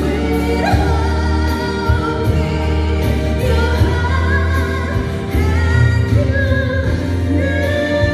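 A woman singing into a microphone through a PA, over instrumental accompaniment, holding long notes with vibrato.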